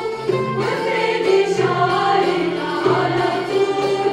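Women's choir singing a traditional Syrian bridal wedding song (zaffa) in harmony, accompanied by an Arabic ensemble of strings and percussion, with low sustained notes under the voices.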